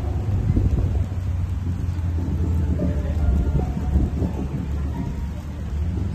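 A steady low rumble of outdoor noise, with faint plucked guzheng notes over it.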